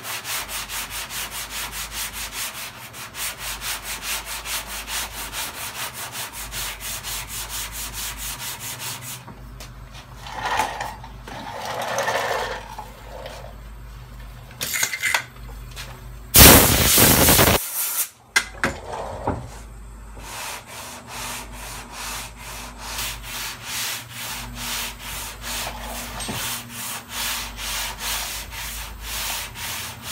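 Sandpaper on a hand sanding block rubbed back and forth over a car door panel in quick, even strokes: final blocking of the bodywork before primer. About nine seconds in the strokes stop for roughly ten seconds, broken by a loud rushing noise lasting about a second, then the sanding resumes at a slower pace.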